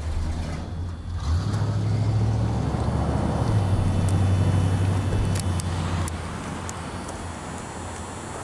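A truck engine rumbling low and steady as the vehicle moves off, growing louder about a second in and fading away after about six seconds.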